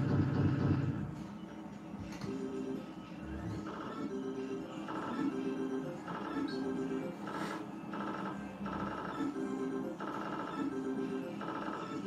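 Novoline Book of Ra slot machine playing its electronic bonus-feature music: short beeping tone phrases repeating about once a second. It opens with a louder, deeper passage that fades after about a second.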